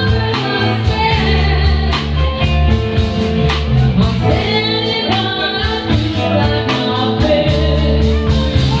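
Live blues band playing: a woman sings over electric guitar, bass and a drum kit keeping a steady beat.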